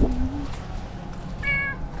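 Domestic cat meowing: a brief low call at the start, then a short, higher meow about one and a half seconds in.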